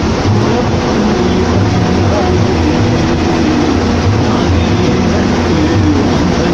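Bus engine running steadily at cruising speed, heard from inside the cab: a continuous low drone with tyre and road noise over it.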